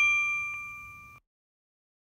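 A bright metallic ding from a logo-intro sound effect, ringing out with a few clear tones and fading, with a faint second tap about half a second in. It cuts off suddenly a little over a second in.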